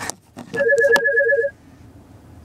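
Electronic ringing tone: a rapid warble of two alternating pitches, about nine pulses in roughly one second, with a sharp click partway through.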